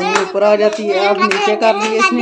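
Small children clapping their hands repeatedly while a child's voice sings along.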